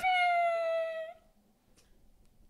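A woman's high-pitched, wordless squeal of emotion, muffled by hands over her mouth, held for about a second and falling slightly in pitch before it cuts off.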